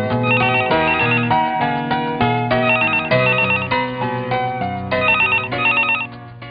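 An electronic desk telephone ringing with a fast warbling trill, in three bursts about two and a half seconds apart, over background keyboard music.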